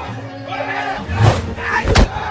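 Men shouting and yelling in a staged slapstick fight, with two blows landing: a softer one a little past halfway and a loud, sharp smack at the very end.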